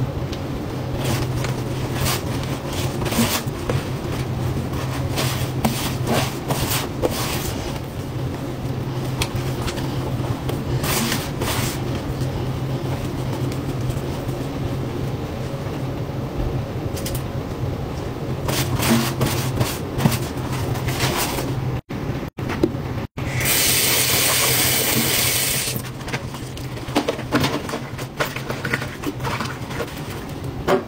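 Scrubbing a stainless steel sink coated in blue cleaning paste: rough scratching and scraping over a steady low hum. About two-thirds of the way in, the sound drops out briefly and then gives way to a few seconds of bright hiss before the scrubbing resumes.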